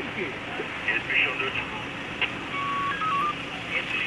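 A short electronic signal about two and a half seconds in: one held beep, then a few quick beeps stepping up and down in pitch, under low background voices.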